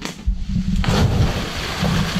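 A person jumping from a fallen tree trunk into a river: a heavy splash about a second in, then the rush of spraying and falling water.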